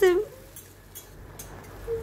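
Faint scraping and light clicks of a metal spatula stirring chopped tomatoes and peanuts in an iron kadhai as they are roasted for chutney.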